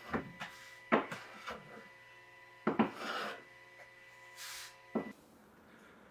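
Woodshop work sounds: several sharp knocks and clatters of wooden pieces being handled, with two short rasping or scraping strokes, over a faint steady hum that stops about five seconds in.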